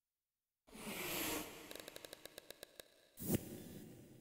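Sound-designed logo sting: after silence, a whoosh swells in about three-quarters of a second in, then a run of about ten quick ticks that slow slightly, then one sharp hit with a ringing tail that fades out.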